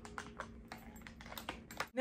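Light clicks and taps of plastic eyeshadow palettes being handled and set down on a table, about eight small knocks at an uneven pace.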